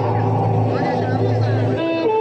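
Live stage music through the PA: a low, held droning keyboard note that breaks off briefly about a second in and picks up again. Near the end a bright electronic keyboard melody begins.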